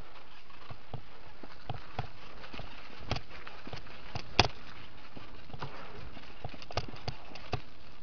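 Mountain bike rattling and clacking over a rough dirt singletrack descent: irregular knocks and clicks from the bike and camera mount, the loudest a sharp knock about halfway through, over a steady rushing noise.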